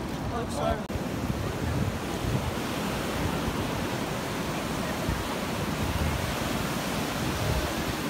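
Ocean surf breaking and washing up the beach in a steady rush, with wind buffeting the microphone. A short bit of voice is heard in the first second.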